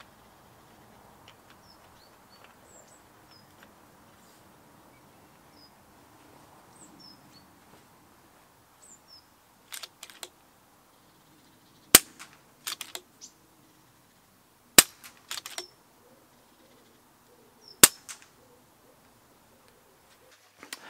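Three moderated shots from a regulated .177 FX Dynamic pre-charged air rifle fitted with a SAC sound moderator, each a short sharp report about three seconds apart and followed by a few lighter clicks. Birds chirp faintly before the shooting starts.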